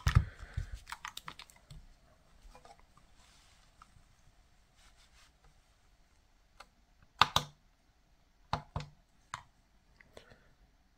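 Light clicks and knocks of 9V batteries and a plastic digital kitchen scale being handled and set down, with a quick run of clicks in the first two seconds and a few sharper clicks later on as the scale's button is pressed.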